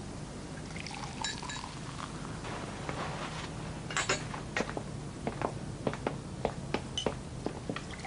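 A drink poured from a bottle into a glass. From about four seconds in comes a run of short, sharp clicks: high heels on a wooden floor.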